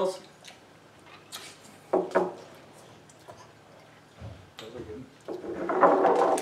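Brief spoken sounds at a table with quiet room tone between them, a low rumble about four seconds in, and talk starting again near the end.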